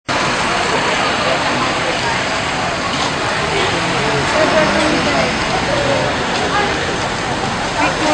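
Busy street noise: a steady, loud hubbub of traffic and several people talking at once, with voices standing out more in the second half.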